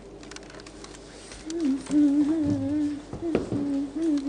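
A person humming a wavering tune with closed lips, starting about a second and a half in, with a couple of light knocks partway through.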